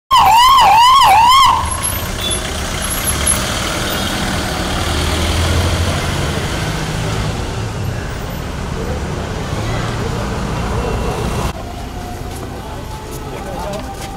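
Ambulance siren yelping rapidly, about three rises and falls a second, for the first second and a half; this is the loudest sound. After it comes a steady low rumble of vehicle engines and street traffic.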